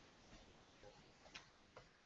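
Near silence: room tone, with a couple of faint clicks in the second half.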